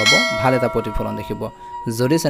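A bell-like ding sound effect, struck once at the start and ringing on, fading over about a second and a half.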